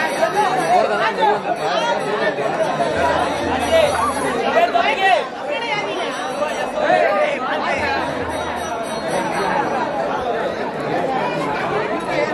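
A large crowd of many people talking and calling at once, a dense, continuous babble of overlapping voices.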